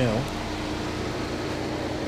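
2012 Chevrolet Equinox's 2.4-litre four-cylinder engine idling with a steady hum.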